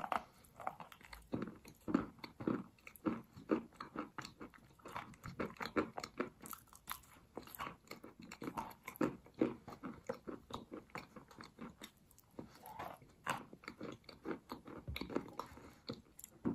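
Close-up biting and chewing of a chunk of chalk coated in sour cream: a dense, unbroken run of crisp crunches, several a second.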